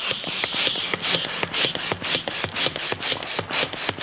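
Blue plastic hand balloon pump worked in quick strokes, a rasping rush of air about twice a second as it inflates a balloon.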